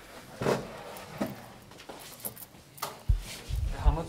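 Handling noise from the recording device: a few light knocks and rustles, then a run of heavy low thuds near the end as it is picked up and moved.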